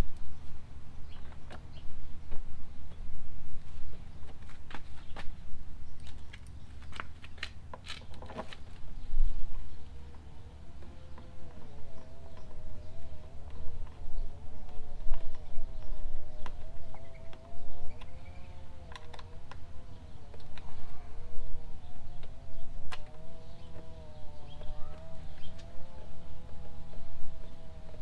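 Small clicks, taps and knocks of hand-fitting bolts and a plastic fairing panel on a motorcycle, over a low rumble. From about ten seconds in, a faint wavering drone joins and runs on.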